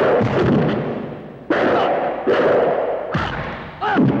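Dubbed film-fight hit sound effects: a few sudden punch and kick impacts, about a second and a half apart, each with a falling low boom.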